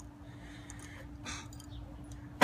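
Faint handling of small metal hardware, with one brief soft scrape a little over a second in, over a steady hum.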